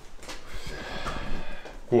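Faint background talk and room noise, ending with a man's short spoken question.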